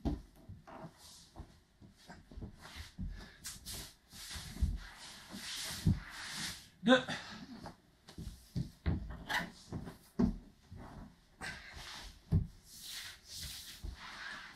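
A person rolling and twisting on bare wooden floorboards in a cotton judo uniform. Irregular dull thuds come as the body, shoulders and feet land, with swishing and rustling of the heavy cotton cloth in between.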